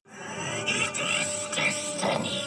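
Outro soundtrack over the end card: a dense, noisy sound that swells up right after the speech and holds steady, with one thin steady tone running through it.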